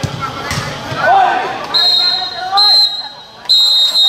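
A referee's whistle blown three times, two short blasts and then a longer one, a steady shrill tone. Before it, in the first second or two, there are shouting voices and a dull ball thud.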